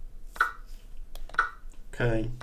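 Online chess board's move sound effects: two short wooden clicks about a second apart as pieces are captured on the board, with a few fainter clicks between them.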